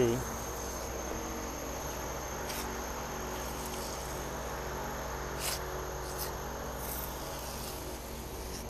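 Steady mechanical hum with a thin, constant high whine, and a few faint short scrapes of a plastic spatula working sand-filled repair mortar into a concrete floor joint.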